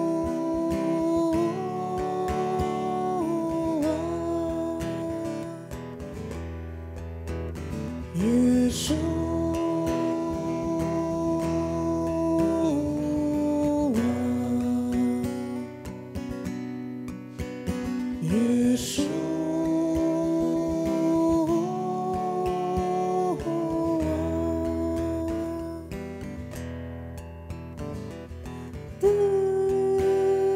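Worship song: a voice singing long, held phrases over strummed acoustic guitar, each phrase starting with a short upward slide.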